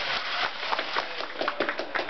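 A quick, irregular run of sharp taps, growing denser about a second in.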